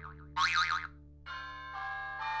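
An edited-in comic 'boing' sound effect, a short wobbling tone. It is followed from about a second in by a sustained bell-like chime of several steady tones, with another note entering near the end.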